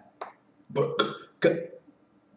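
A man's short, wordless vocal sounds and mouth noises: a breathy puff near the start, then three quick voiced bursts about a second in.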